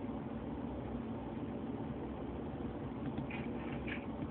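Steady low hum and hiss of background room noise, picked up by a phone's microphone, with no distinct event.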